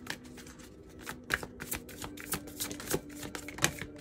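Tarot deck being shuffled by hand: a dense, irregular run of quick card clicks and slaps.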